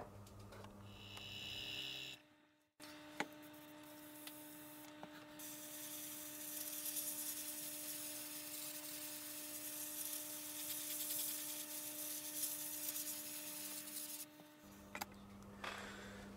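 Airbrush spraying sleeper grime enamel paint: a steady hiss of air and paint, over a low steady hum. It starts about three seconds in and stops shortly before the end.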